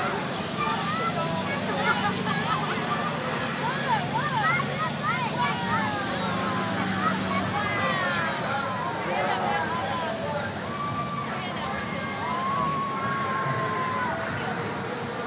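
A street crowd cheering and calling out, many voices overlapping, busiest in the middle, with one long held call near the end. A car engine runs steadily underneath for the first half as the car passes.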